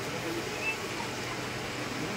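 Aquarium aeration and water movement: a steady watery hiss with a low constant hum, under faint voices in the background.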